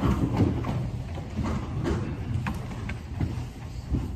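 Scattered knocks and clunks, about five in four seconds, from people settling into wooden church pews while the altar is being prepared. Under them runs a low steady rumble.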